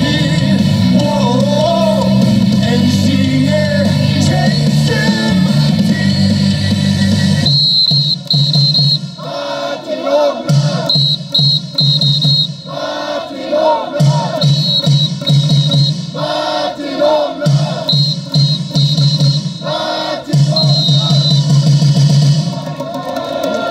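Baseball cheer song played loud over the stadium loudspeakers, with many voices singing along. About seven and a half seconds in, the full backing drops out and the song goes on in short phrases of a second or so with brief gaps between them.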